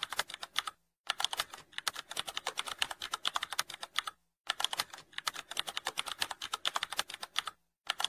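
Typing sound effect: fast keyboard key clicks, about ten a second, in long runs that break off briefly about a second in, about four seconds in and just before the end.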